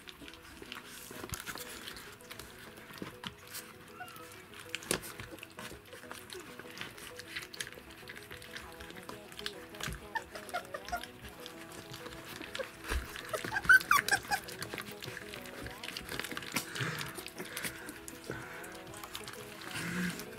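Rottweiler puppies eating soft puree from plastic bowls: a run of small wet smacking and lapping clicks, with a few brief high squeaks about two-thirds of the way through.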